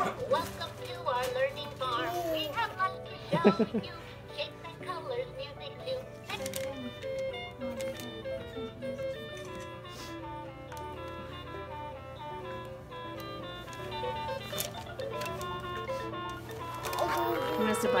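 VTech Sit-to-Stand Learning Walker's electronic activity panel playing sounds as its buttons are pressed: a voice or sung phrase at first, then a jingly melody of short stepped notes, set off by the baby's presses.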